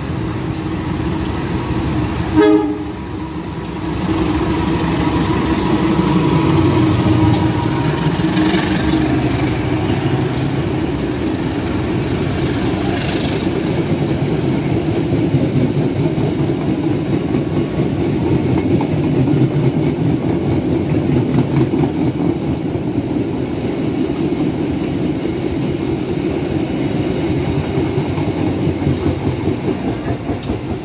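Diesel-electric locomotive-hauled passenger train sounding a short horn blast about two and a half seconds in, then running past close by: the locomotive's engine rumble followed by the coaches rolling by, with the wheels clicking rhythmically over rail joints near the end.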